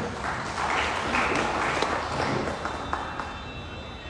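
Audience applauding, slowly dying away.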